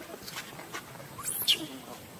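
A macaque's high-pitched squealing call that sweeps up and back down, about 1.3 s in, followed by a short lower falling sound.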